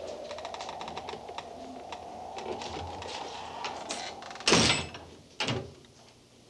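A door being rattled and opened: a run of small clicks and rattles over a steady whistling tone, then two heavy thumps near the end, about a second apart.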